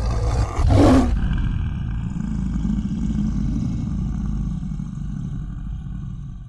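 Logo sting sound effect: a whooshing burst in the first second, then a long, low lion roar that slowly fades out.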